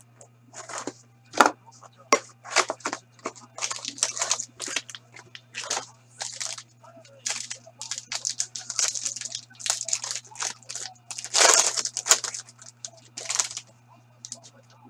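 A trading-card hobby box being slit open, then a foil pack of hockey cards torn open: a run of quick tearing and crinkling rustles, loudest and longest about eleven to twelve seconds in.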